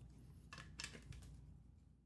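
Near silence, with a few faint light knocks of hard 3D-printed plastic parts being handled, about half a second to a second in.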